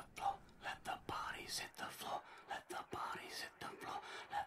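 A person whispering in short phrases, quietly.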